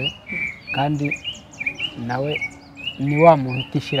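A man speaking in short phrases, with many short, high chirps of small birds repeating in the background throughout.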